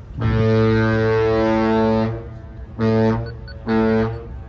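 Ship's horn of the Great Lakes self-unloading freighter Algoma Compass sounding a salute: one long blast of about two seconds, then two short blasts, the long-and-two-short salute. The horn holds one steady low note with many overtones.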